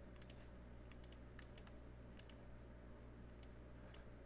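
Near silence: a steady low room hum with faint, irregular light clicks, a few each second.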